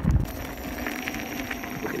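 Electric unicycle running along a dirt track: a steady motor hum over tyre and wind rumble, with a short low bump at the very start.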